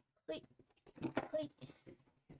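Brief speech from a woman, with words the recogniser did not catch.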